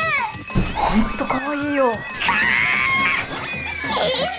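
A high-pitched voice making wordless cries that slide up and down in pitch, over background music.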